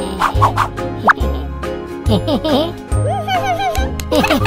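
Upbeat children's background music with a steady bass line, a quick rising cartoon sound effect about a second in, and squeaky, chirping cartoon baby babble in the second half.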